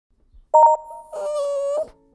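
Short intro sound effect: a brief pulsing two-note chime, then a held wailing tone lasting under a second that rises slightly as it cuts off.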